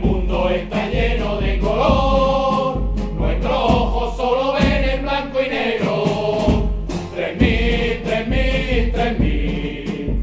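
Music: a Spanish football anthem sung by a group of voices over a band with a steady beat.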